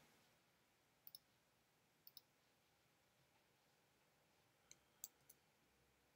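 Near silence with a few faint computer clicks: two quick double clicks, then three single clicks near the end.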